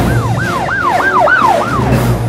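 Emergency-vehicle siren in a fast yelp, its pitch sweeping up and down about four times a second, over a low rumble that comes in suddenly at the start.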